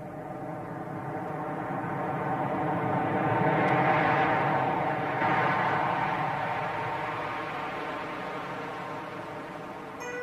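A swelling whoosh over a steady drone of many held tones, forming the opening of the song's recorded intro. It grows to its loudest about four to five seconds in, then slowly fades.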